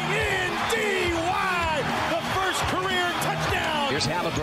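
Show intro: a music bed with excited, raised broadcast voices laid over it, like a basketball play-by-play call.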